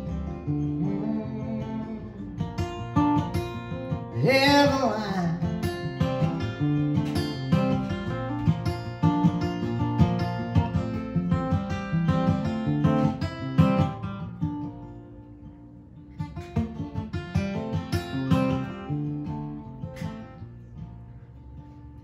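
Solo acoustic guitar instrumental break, picked and strummed notes in a steady rhythm, with one short sung note about four seconds in. The playing softens briefly in the middle and again near the end.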